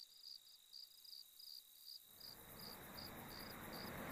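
Faint crickets chirping in an even, regular rhythm over a steady high-pitched trill. From about halfway a broad rushing noise swells and grows louder toward the end.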